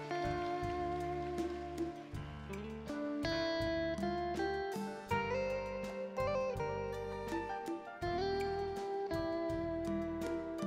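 Live band playing the instrumental introduction of a song, with plucked guitar over a steady bass line.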